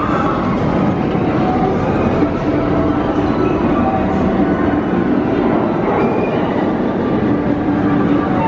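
Cobra's Curse spinning roller coaster cars rolling along the steel track, a loud, steady rumble of wheels on rail.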